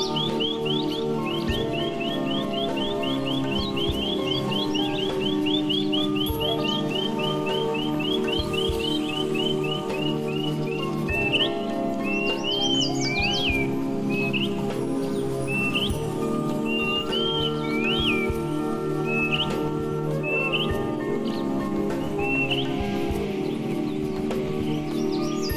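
Calm ambient background music of sustained tones, layered with bird chirps. The chirps come as a fast run of repeated notes in the first half, then as single rising-and-falling whistled calls about once a second.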